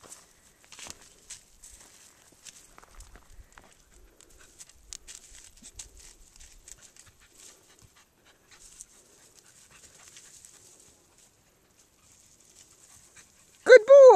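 Faint rustling and scattered light clicks of movement through dry grass and brush, as a chocolate Lab puppy searches the undergrowth. Just before the end, a loud, high shout of praise falls in pitch.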